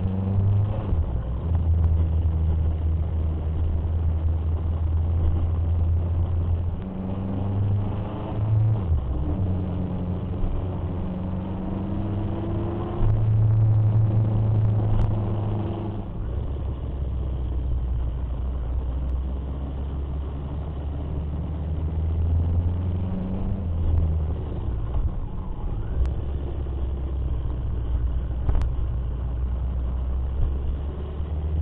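Motorcycle engine running under way while riding, its pitch stepping up and down several times with throttle and gear changes.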